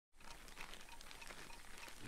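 Faint kitchen ambience with scattered light taps and clicks, as of food being handled at a counter.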